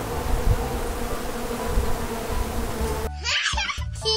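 Buzzing of a flying insect, a steady drone, which cuts off abruptly about three seconds in. A short burst of laughter follows.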